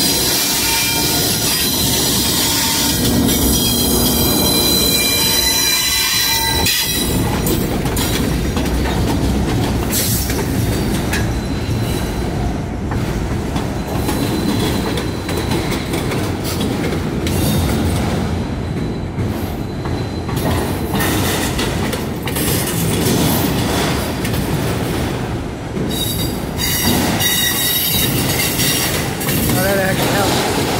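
Norfolk Southern freight train rolling past close by, its wheel flanges squealing high against the rail over a steady rumble of wheels and clicking over rail joints. The squeal is strongest in the first several seconds, fades to rumbling and clacking through the middle, and returns near the end.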